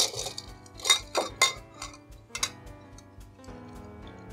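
Ice and a metal bar spoon clinking in a glass mixing glass as a cocktail is stirred and readied for straining: half a dozen sharp, irregular clinks in the first two and a half seconds. Background music plays throughout.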